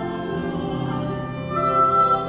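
Small church orchestra playing a hymn, a woodwind carrying the melody over the accompaniment. It swells to a louder high held note near the end.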